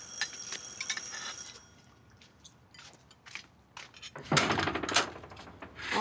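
An electric doorbell rings with a high, steady tone for about a second and a half. A few light clicks follow, then the front door is opened with a loud rattle about four seconds in.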